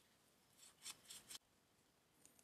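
Near silence, with a few faint short scrapes about halfway through as a plastic stir stick mixes epoxy in a silicone baby bottle nipple; they stop abruptly.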